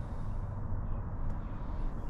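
Steady low background rumble of outdoor ambience, with no distinct events.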